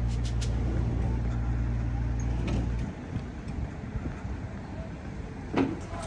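Steady low drone of a road vehicle's engine in street traffic, which cuts off sharply about halfway through and leaves quieter, even street noise. A brief louder burst comes near the end.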